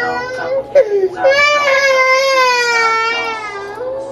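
Toddler crying: a short cry, then one long wail held for about two and a half seconds that slowly sags in pitch.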